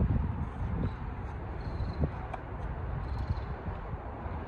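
Wind rumbling unevenly on a phone microphone, with a single light click about two seconds in.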